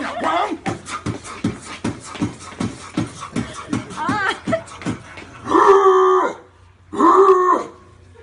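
A man beatboxing into his cupped hands: a steady beat of low thumps, about two a second, with quick clicks between them. A short rising vocal run comes about four seconds in, followed by two loud held vocal notes near the end.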